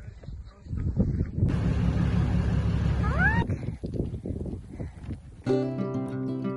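A noisy outdoor rustle while walking, with one short rising animal call about three seconds in. Plucked-string intro music starts near the end.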